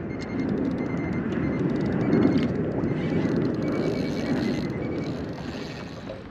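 Steady wind rushing over the microphone on open water, with the lap of choppy water around the kayak.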